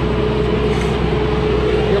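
Steady vehicle engine hum with a constant droning tone, heard from inside a car idling at the roadside; nothing starts or stops.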